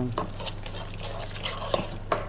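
Water pouring from a mug into a wet flour-and-oil mix in an enamel bowl while a metal spoon stirs it, with a few light clinks of the spoon against the bowl.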